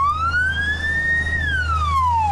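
Fire engine's siren wailing: one slow sweep, rising in pitch for over a second and then starting to fall, over a low steady rumble.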